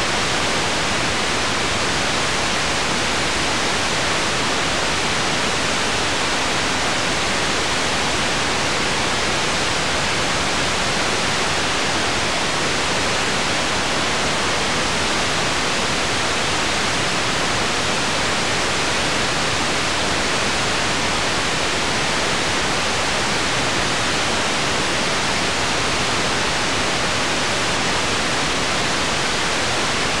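A television set's sound channel gives out loud, steady white-noise static: the BBC1 transmitter has shut down, and the receiver hisses on an empty channel.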